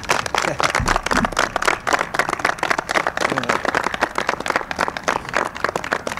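A small crowd applauding: dense, steady clapping that fades as speech resumes at the end.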